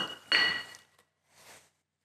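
A light clink with a brief ring, then about half a second of scraping and rustling, as a floor grinder's tooling plate and foam pad are handled and a plate is set down. A faint short rustle follows about a second later.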